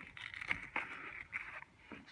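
A cardboard box being opened by hand and a plastic tray slid out of it: a soft scraping rustle with a few light clicks, dying away near the end.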